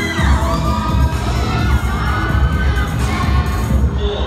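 A crowd of students shouting and cheering, with high screams rising and falling, over dance music with a pulsing bass beat.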